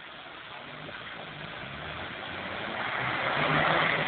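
Suzuki Vitara 4x4 engine running under load as it drives over rough quarry ground, growing steadily louder and loudest near the end.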